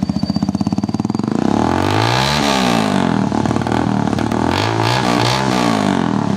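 A sport-styled motorcycle's engine, fitted with a baffle exhaust, idling with an even pulsing beat. About a second in it is revved up and down several times, the pitch rising and falling with each blip of the throttle.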